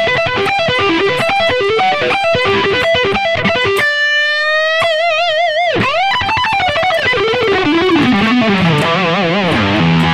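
Electric guitar (Charvel So Cal through a Yamaha THR10X amp) playing a string-skipping lick at speed: rapid picked notes, then about four seconds in a held note with wide vibrato and a sharp dip in pitch and back, followed by a run of notes falling in pitch.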